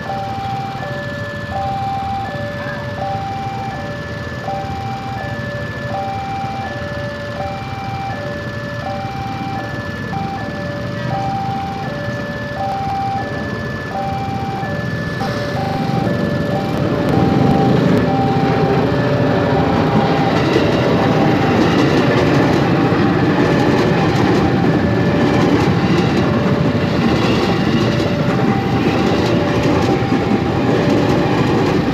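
Level-crossing electronic warning bell chiming in two alternating tones, over and over. From about halfway a KRL Commuterline electric train, an ex-JR 205 series set, rumbles in, growing louder until it is passing the crossing and nearly drowns the bell.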